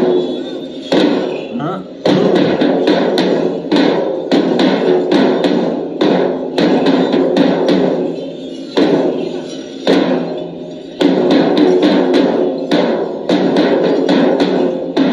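Kerala chenda drums, a group of cylindrical drums beaten with sticks, playing a fast run of sharp strikes. The playing comes in phrases that swell and break off, restarting about every one to two seconds.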